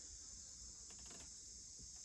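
Faint, steady high-pitched chorus of crickets trilling, with a few faint taps about half a second to a second in.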